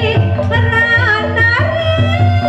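A pesindhen (Javanese female singer) singing a wavering, ornamented vocal line through a microphone, over gamelan accompaniment with sustained metallophone tones.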